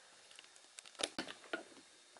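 Quiet room tone with a few soft, short clicks and taps, mostly in the second half.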